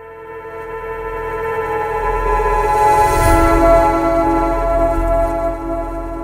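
Channel logo sting: a sustained synthesized chord of many held tones swelling over a low rumble, with a brief shimmering swell about three seconds in, then easing off near the end.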